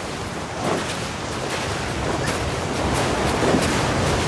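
Sea surf washing onto the shore with wind, a steady rushing noise that swells slowly.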